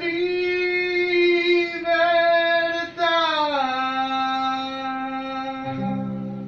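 A man sings the final word 'libertad' in long held notes, sliding down to a lower note about three and a half seconds in and holding it until near the end. A guitar chord comes in under the voice near the end.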